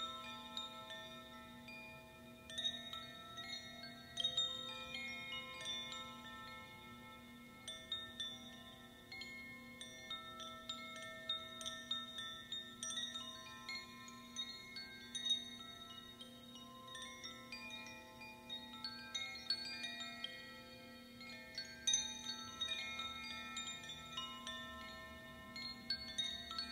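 A pair of handheld Koshi-style bamboo tube chimes swayed slowly, giving a continuous random tinkling of many overlapping bell-like notes that swell and fade, over one steady low drone.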